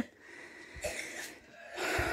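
A person sniffing twice through the nose, smelling the leaf of a scented plant: a short sniff about a second in and another near the end.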